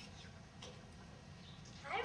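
Faint stage noises, then near the end a child's voice breaks in with a loud, drawn-out call whose pitch rises and then falls.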